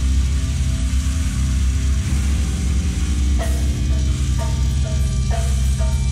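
Heavy metal band playing live and loud: distorted bass and guitar over fast drumming on a full drum kit. About halfway through, a sharper accented beat comes in roughly once a second.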